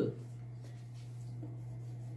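Faint strokes of a marker writing on a whiteboard over a steady low hum.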